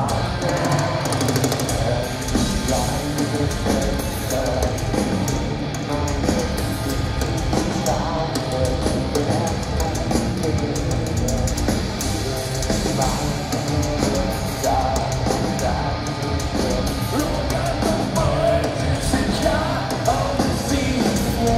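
Live nu-metal band playing loud: drum kit, heavy distorted guitars and bass, with the singer's voice over the top, recorded from the crowd.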